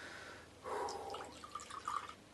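Whisky poured from a bottle into a glass tumbler: an uneven, gurgling pour that starts just over half a second in.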